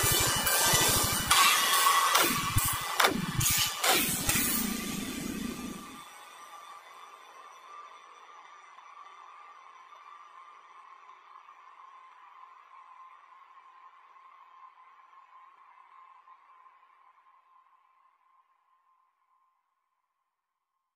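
Electronic music with repeated falling bass sweeps, cutting off suddenly about six seconds in. A faint steady tone lingers after it and fades out over the next twelve seconds.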